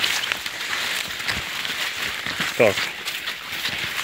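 Maize leaves and stalks rustling and crackling as they brush past while someone walks through a dense cornfield, with a brief vocal sound about two and a half seconds in.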